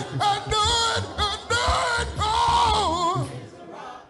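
Gospel singing voice holding long, wavering, melismatic notes. The notes fade in the last half second.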